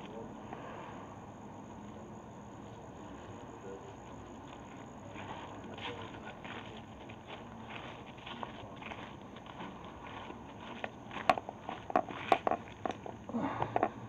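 Footsteps of a person walking over dry grass and bare dirt: soft at first, with sharper, louder steps and clicks in the last few seconds.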